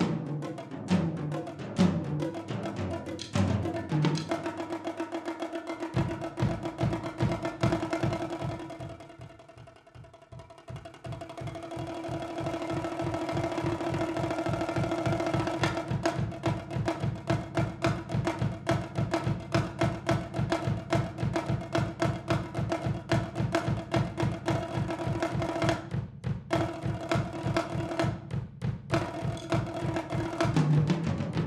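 Solo multi-percussion playing: tom-toms and bongos struck with sticks. Quick irregular strokes give way to a fast, even drum roll that fades almost to nothing about ten seconds in, then swells back up loud, with two short breaks near the end.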